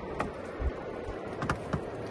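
Steady rushing noise of moving river water around a drift boat, with a few light clicks and taps.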